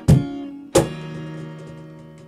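Acoustic guitar strumming the last two chords of a song, the second about three-quarters of a second after the first, then left ringing and slowly fading out.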